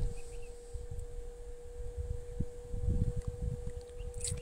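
Wind buffeting the microphone in an uneven low rumble, over a faint steady hum.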